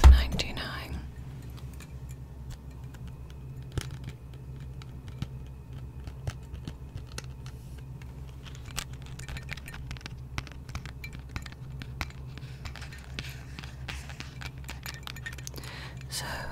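Scattered small clicks and light taps from a pair of dangle earrings on a paper backing card being handled and jiggled close to the microphone, over a low steady hum.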